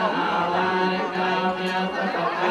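Buddhist chanting: many voices chanting together on one steady held pitch, with people talking over it.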